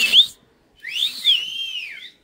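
A person whistling: a short, sharp upward whistle at the start, then about a second in a longer whistle that rises and falls in an arch.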